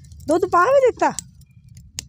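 A short burst of a high-pitched voice speaking, followed by a lull and a single sharp click near the end.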